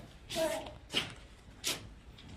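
Quiet, brief sounds from a person's voice: a short voiced sound, then two sharp hissing breaths about a second apart.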